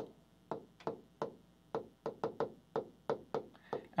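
Stylus tapping against the glass of a touchscreen display while handwriting a word: a quick, uneven run of light taps, about four a second.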